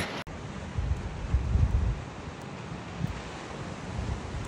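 Surf washing on a beach under a steady rush of wind, with gusts buffeting the microphone in low rumbles about a second in and again around three seconds.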